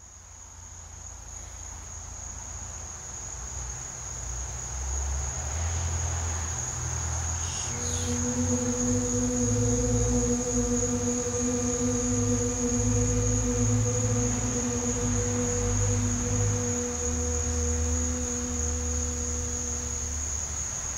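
A woman's voice intoning "shu", the Liver sound of the Qi Gong Six Healing Sounds: a short "sh" hiss about eight seconds in, then a single steady "oo" held at one pitch for about twelve seconds. Under it runs a steady high-pitched insect-like whine and a low rumble.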